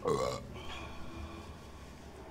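A man's short, loud guttural sound, falling steeply in pitch and lasting under half a second, like a belch.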